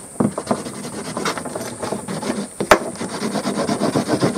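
Wooden edge burnisher rubbed briskly back and forth along the beeswaxed edge of a leather belt, a run of repeated rasping strokes, with one sharp click about two-thirds of the way through.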